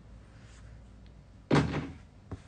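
A single sudden thump about one and a half seconds in, dying away within half a second, against faint room tone.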